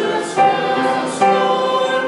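Mixed choir of men and women singing in harmony, holding sustained chords that move to new notes twice.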